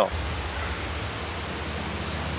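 Steady outdoor background noise: an even hiss with a constant low rumble underneath.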